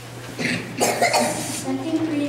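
A person coughing close to a microphone: a short burst about half a second in, then a longer, harsher one about a second in.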